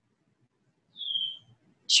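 A bird's single short whistled note, falling slightly in pitch, about a second in.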